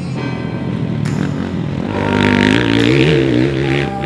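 Dirt bike engine revving as the bike rides fast past, louder in the second half, over background music.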